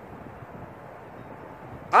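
Steady outdoor background noise, an even low hiss with nothing standing out, in a pause between a man's sentences. His voice comes back right at the end.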